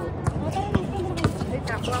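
Basketball being dribbled on a hard court, about two bounces a second, with players' voices around it.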